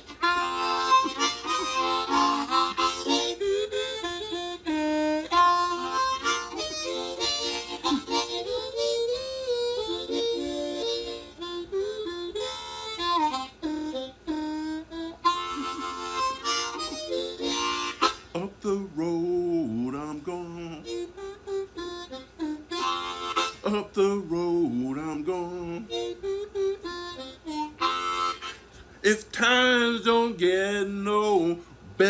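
Diatonic blues harmonica played solo with the hands cupped around it: chords and bent, wavering notes. About two-thirds through, the high chords fall away and lower bent notes carry on.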